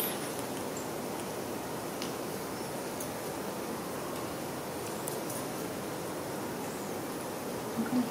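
A steady, even hiss of background noise, with a few faint clicks about two, three and five seconds in.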